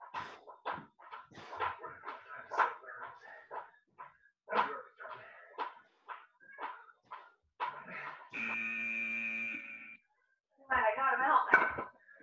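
A workout interval timer sounds a steady electronic tone for about a second and a half, about eight seconds in, marking the end of a work interval and the start of the rest. Scattered short vocal bursts come before and after it.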